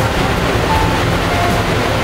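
Ferry's engine and propeller wash: a loud, steady low rumble with the churning of the wake water.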